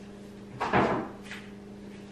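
A single thump about half a second in, with a short lighter tap soon after, over a steady low hum.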